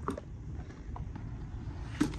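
Tight cardboard lid of a large boxed miniatures game being lifted slowly off its base: faint rubbing of cardboard and a few light taps.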